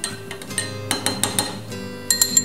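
Metal spoon clinking against the inside of a drinking glass of water as it is dipped and swirled, a quick run of about five clinks in the middle.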